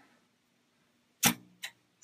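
A sharp click about a second and a quarter in, followed by a fainter click: the power switch of a BK Precision bench power supply being flipped on.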